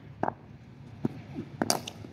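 A few light knocks, then a sharp crack near the end as a cricket bat strikes the ball.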